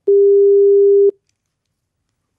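A single telephone ringback tone: one loud, steady tone about a second long that cuts off sharply, as an outgoing phone call rings on the line.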